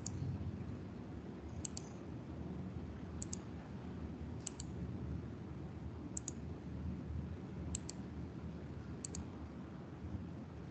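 Computer mouse clicking: seven quick double clicks about a second and a half apart, as spelling corrections are picked from a right-click menu. A low steady hum of room noise sits underneath.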